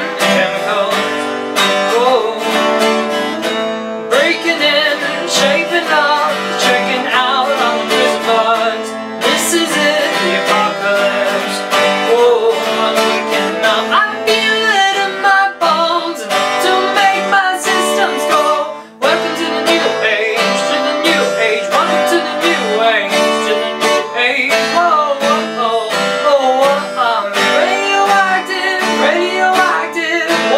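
Twelve-string Washburn steel-string acoustic guitar strummed in a steady rhythm, with a man singing over it. The strumming breaks off for a moment about two-thirds of the way through, then carries on.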